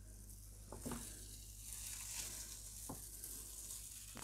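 Card peeling off a gel printing plate, the tacky paint crackling faintly as it lets go, with a couple of light knocks from handling.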